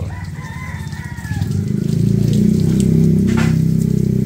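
A rooster crows once in about the first second, over a steady low mechanical drone that grows louder about halfway through.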